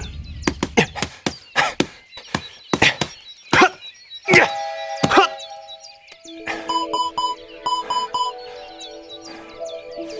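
Punches landing on a heavy punching bag: about a dozen sharp thuds in quick, uneven succession over the first five seconds, then they stop and background music with sustained and pulsing tones carries on.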